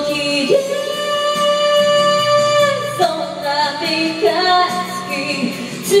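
A woman singing into a handheld microphone over a music accompaniment, holding one long note for over two seconds, then moving into a new phrase about three seconds in.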